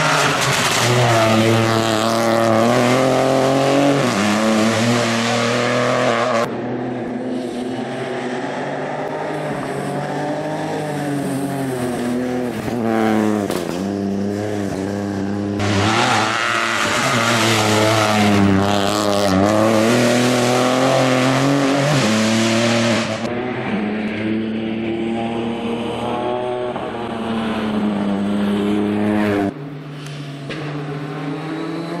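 Rally car engines under hard throttle, pitch climbing and dropping again and again as they rev through gear changes and lift for corners. The sound jumps abruptly several times from one car to the next.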